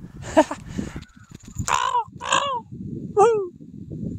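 A crow cawing overhead: several short harsh caws, spaced roughly a second apart.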